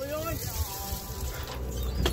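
Water washing and a steady low rumble around a fishing boat, with faint distant voices. A shouted word trails off right at the start.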